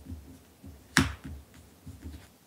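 A tarot card being flipped over and laid down on a cloth-covered table: one sharp snap of the card about a second in, with a few softer taps of handling around it.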